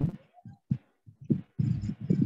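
Acoustic guitar strummed in irregular strokes, heard choppy and muffled through a video call's screen-shared audio. The strokes crowd together in the second half.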